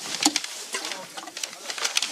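Background sound of a film dialogue scene in a pause between lines: a scatter of light clicks and taps, with a faint low call about a quarter second in.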